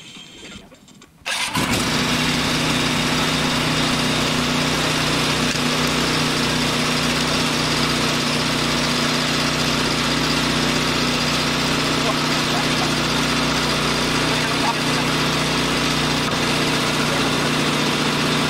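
A motor or engine starts abruptly about a second in, then runs at a steady, unchanging pitch.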